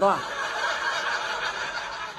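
A man's long breathy exhale, a steady unvoiced hiss like a stifled laugh or sigh, lasting about two seconds after his speech breaks off.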